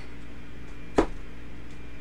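A single sharp tap about a second in: a deck of oracle cards being set down on a table top.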